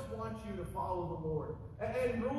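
A man's voice making a drawn-out, wordless sound with wavering pitch that falls toward the end, imitating someone complaining.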